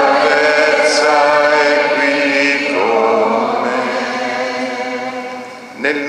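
Voices singing the Mass entrance hymn in long held notes, the last phrase dying away near the end.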